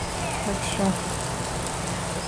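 Lawn sprinkler spraying water, a steady hiss of falling spray, with faint children's voices.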